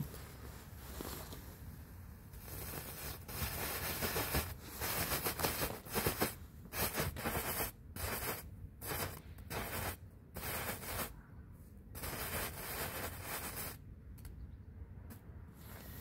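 A strobe tablet (Blitztablette) burning on concrete: a fizzing hiss broken by irregular crackling pulses that swell and fade, busiest in the middle and thinning toward the end.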